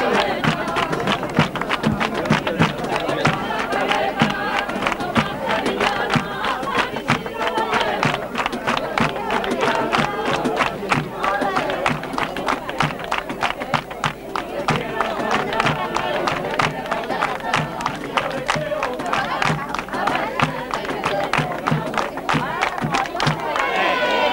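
A group singing a festive song with many hands clapping along in rhythm (palmas).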